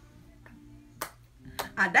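A single sharp plastic click, like a makeup compact snapping, about a second in, over a faint steady hum of music; a woman's voice starts near the end.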